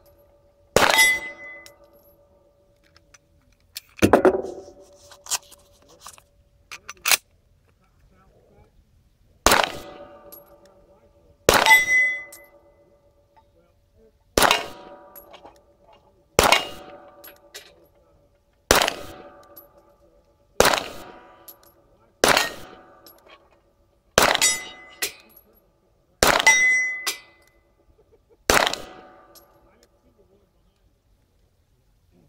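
Smith & Wesson M&P9 Pro 9mm pistol fired at steel plate targets: roughly a dozen shots about two seconds apart, each followed by the ringing clang of a steel plate being hit.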